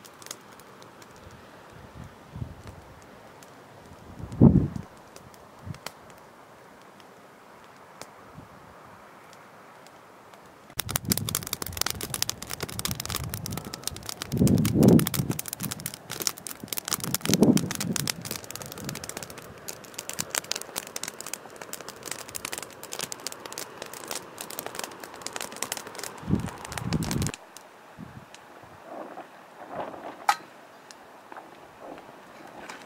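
Wood campfire crackling and popping in dense, rapid sharp snaps. The crackling starts abruptly about a third of the way in and cuts off shortly before the end, with a few low thuds among the pops. Before it there is only faint outdoor background with a single dull thump.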